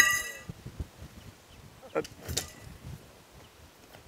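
A tent's fabric and poles being handled as the tent is taken down, with irregular rustling and soft knocks, opening with a short ringing ping that fades within half a second.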